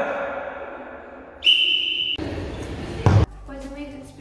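Echoing gym sounds: the end of a shout ringing off the hall walls, a short high steady whistle blast about one and a half seconds in, then a loud single thump near the end that cuts off abruptly.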